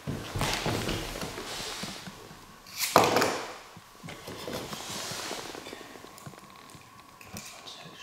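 A small plastic toy hits bare wooden floorboards with one sharp knock about three seconds in, with handling and shuffling noise before it.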